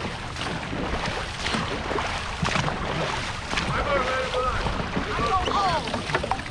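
Dragon boat paddles stroking and splashing through the water, with wind rumbling on the microphone. From about four seconds in, voices call out over the paddling.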